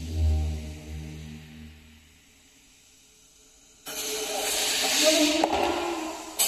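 Experimental electroacoustic music on invented acoustic instruments with live electronics: a low droning tone with overtones fades out over the first two seconds. After a moment of near quiet, a loud hissing, air-like noise with faint tones inside it starts suddenly about four seconds in.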